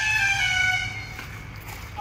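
A vehicle horn held in one long honk, fading out about a second in, over a low steady hum.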